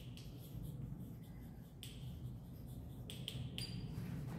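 Chalk writing on a blackboard: a few faint, short scratchy strokes, bunched together near the end.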